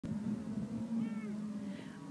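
Cattle lowing from a herd: a long, steady low call, with a shorter, higher call that rises and falls about a second in.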